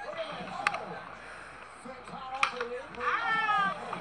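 Voices talking in the background, with two sharp knocks about a second and a half apart and a louder, rising voice near the end.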